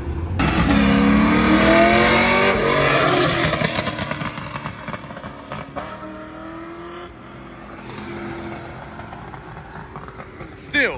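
A performance car's engine accelerating hard past, loud and rising in pitch over the first few seconds, then fading as it pulls away. Later a quieter engine runs steadily.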